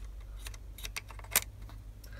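A handful of light plastic clicks as the sprung coupling on the underside of a Hornby Mk3 model coach is pushed and let go by hand, the sharpest a little after halfway.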